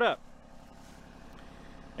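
Kubota mini excavator's diesel engine idling, faint and steady.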